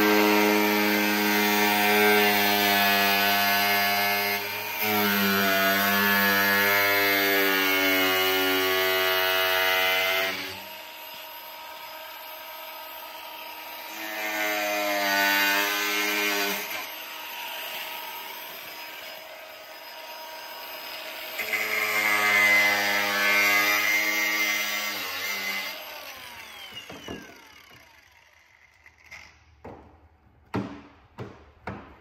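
Cordless angle grinder cutting through a snowmobile's plastic snow flap, its motor whining in three long runs with quieter gaps between. It spins down with a falling whine about 27 seconds in, followed by a few light clicks.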